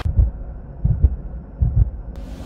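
Low, muffled heartbeat-like pulse from the show's logo sting: beats in pairs, about one pair every 0.8 s.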